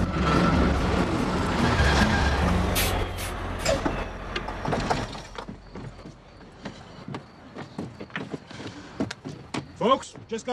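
Coach bus engine running with a steady low drone that fades away about five seconds in, leaving only faint scattered clicks and knocks.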